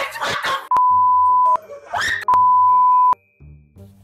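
Two loud, steady, single-pitch bleep tones of the kind used to censor words, each just under a second long, with a short rising sound between them, over quiet background music.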